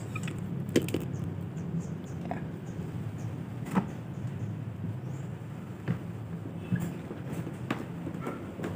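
Handling noise as a cloth-wrapped durian is set into a plastic bucket and the cloth pressed down: cloth rustling and about five light, scattered knocks against the bucket, over a steady low hum.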